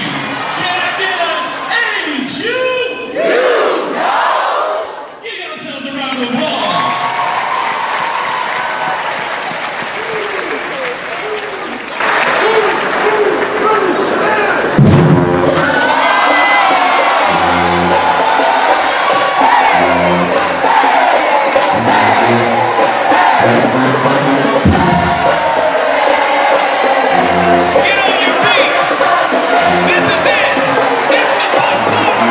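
A large crowd chanting and shouting in a hall. About halfway through, a marching band starts up, brass and sousaphones playing over a steady drum beat, with the crowd cheering over it.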